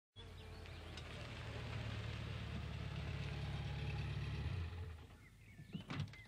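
Car engine running and growing louder as the car drives up, cutting off about three-quarters of the way through as it stops. Birds chirp afterwards, with a sharp click near the end.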